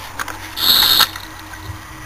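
Brief hiss, about half a second long, of the little remaining pressure escaping from a BMW M30 cooling system's plastic expansion tank as its cap is loosened, after a couple of faint clicks from the cap.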